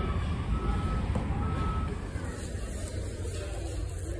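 Low, steady rumble of a large warehouse-style store hall, with a few short electronic beeps in the first half.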